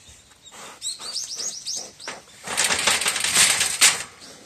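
A wild boar thrashing inside a steel wire-mesh box trap. The cage rattles loudly for over a second in the second half, ending in a sharp clang. Before that comes a quick run of high, falling chirps.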